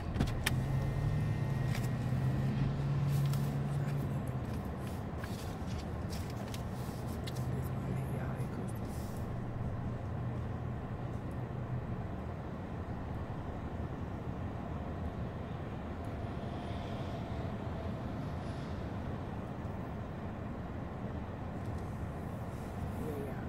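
Steady road and engine noise inside a moving car's cabin, with a few scattered clicks and knocks in the first nine seconds or so.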